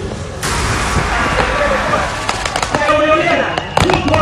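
A voice shouting over loudspeakers in the open, with a few sharp cracks.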